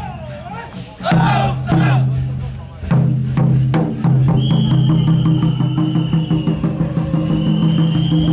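Temple-procession drum and percussion music: a group shouts together about a second in, then drums play a steady fast beat. A high whistle is held for a few seconds and blown again near the end.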